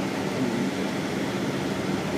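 Steady cabin noise inside a 2006 MCI D4500CL coach bus under way: the diesel engine's even low hum under tyre and road noise.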